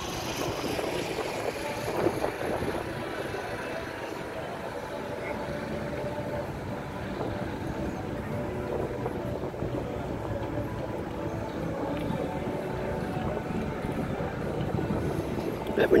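Steady outdoor background noise with faint, indistinct voices of people in the background.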